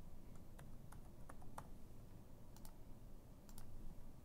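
Faint, irregular keystrokes on a computer keyboard as a short word is typed.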